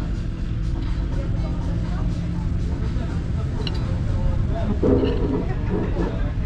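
Steady low rumble of road traffic, a vehicle engine running, with faint background voices.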